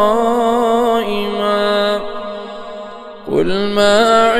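A solo male voice reciting the Quran in melodic chant, holding one long vowel at the end of a verse as it slowly fades. After a short breath about three seconds in, he begins the next verse on a rising note.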